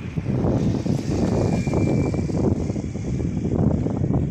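Sea wind blowing on a phone's microphone, a loud, uneven low rumble that rises and falls in gusts.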